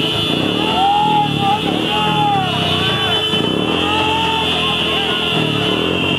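A group of men shouting slogans together in a series of short rising-and-falling calls, over a continuous high-pitched tone.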